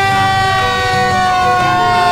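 Fire engine's siren sounding one long, steady tone that drifts slowly down in pitch.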